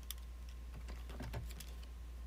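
A few soft, scattered clicks and taps like light typing, over a steady low hum.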